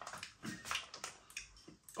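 Mouth chewing crunchy air-dried salami crisps: a run of soft, irregular crunches.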